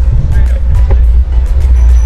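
Heavy, steady wind rumble on the microphone of a camera riding along on a moving bicycle, with music playing underneath.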